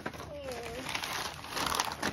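Gift wrapping paper and tissue paper crinkling and rustling as they are handled, busiest near the end, with a brief faint voice about half a second in.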